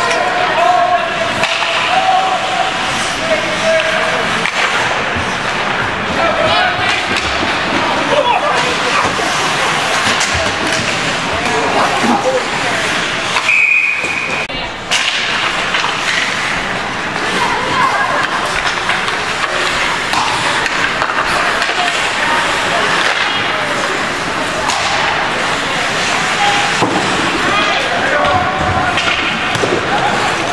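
Ice hockey game sound inside a rink: skates scraping on the ice, sticks and the puck clattering, and thuds against the boards, mixed with spectators' voices. About halfway through there is a short, steady, high whistle.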